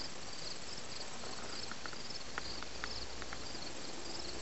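Insects chirping steadily outdoors: a high, evenly pulsing trill over a faint background hiss, with a few faint short ticks in the middle.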